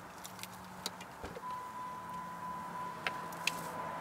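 Faint car keys clicking and jingling at the ignition, with a soft knock about a second in. Then a steady high electronic warning tone from the car's dashboard sets in and holds, as the driver's door is opened.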